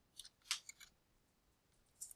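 A few faint computer keyboard key clicks in the first second, then near silence.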